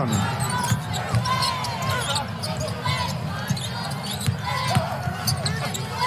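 Basketball being dribbled on a hardwood court, with a run of sharp bounces, short squeaks of sneakers on the floor and the murmur of an arena crowd.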